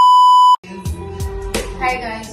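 TV test-card bleep: one steady high tone, about half a second long, cut off suddenly. Background music with a beat and a deep bass line follows.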